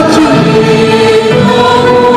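Live orchestra and choir performing, with voices holding long sustained notes over the ensemble.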